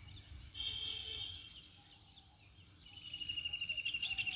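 Birds calling: a short, high, fluttering trill about half a second in, then a longer, rapidly pulsed high trill from about three seconds in, over faint outdoor background noise.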